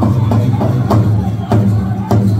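Powwow drum music: a big drum struck in a steady beat, a little under two beats a second.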